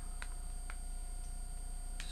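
Two faint clicks of an iPod Touch being handled and pressed into its case, about half a second apart early on, over a steady electrical hum.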